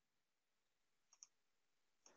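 Near silence, with one faint computer mouse click a little over a second in.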